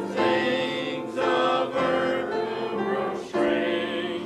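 Small church choir of men and women singing a hymn together in unison and parts, holding long notes that change every second or so.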